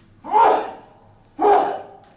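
A man coughing twice, loud, about a second apart.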